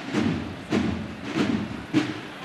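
Drums of a cornetas y tambores band striking a slow, steady beat, about one stroke every 0.6 seconds.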